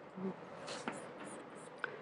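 Chalk on a chalkboard: a few faint scratches and taps as a star-shaped bullet mark is drawn.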